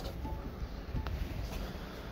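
Steady low rumble of wind on the microphone, with a faint note of background music near the start and a light knock about a second in.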